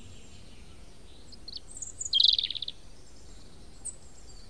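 A small bird calling: a few high chirps, then a short rapid trill about two seconds in.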